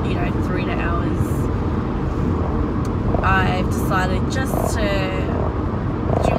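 Steady road and engine rumble of a moving car, heard inside the cabin, with a few short bursts of a woman's voice about three to five seconds in.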